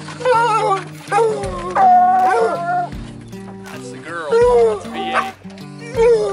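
Hunting hounds baying and howling in about five long, wavering calls, one held for about a second near the middle, over background music with steady low notes.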